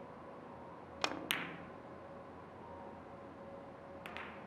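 Carom billiard cue striking the cue ball with a sharp click, followed about a quarter-second later by a second bright click of ivory-hard resin balls colliding on a three-cushion table.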